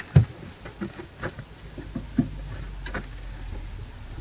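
A single dull thump just after the start, then a few light clicks, with a low steady rumble in the second half.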